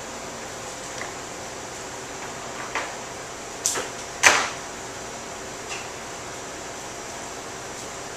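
Steady room hiss with about five short knocks and clicks, the loudest just after four seconds in, from flower stems and tools being handled on a work table.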